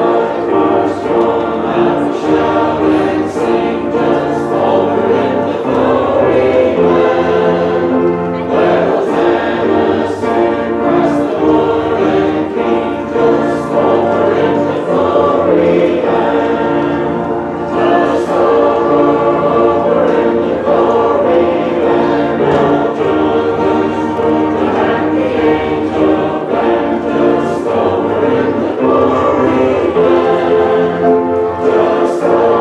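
A choir singing a hymn, with musical accompaniment, in long held lines without a break.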